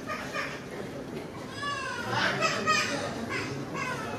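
Indistinct chatter of museum visitors, with a high-pitched voice, likely a child's, rising above it several times.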